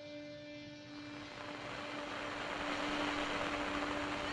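A steady engine-like drone with a rushing noise, fading in and growing louder over the few seconds.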